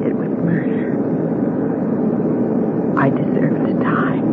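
Steady drone of airliner engines as heard inside the passenger cabin: a sound effect that runs continuously under the drama's dialogue.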